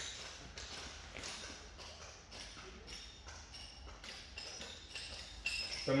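Faint quick taps and knocks, a few a second, as two grapplers' bodies shift against vinyl-covered training mats.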